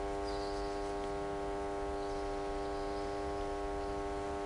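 Steady electrical mains hum: a buzz that holds the same pitch without change, with faint room noise under it.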